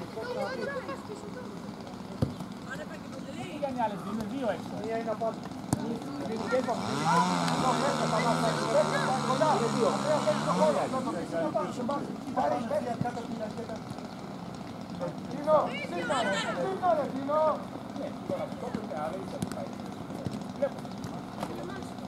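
Outdoor voices and shouts of players and spectators at a youth football match. A vehicle engine runs past for about four seconds, starting about six and a half seconds in, its pitch stepping down and back up.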